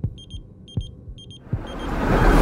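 High electronic beeping in quick clusters of two or three, the beeping of a bomb's timer, over a few low thuds. Near the end a rising whoosh swells up.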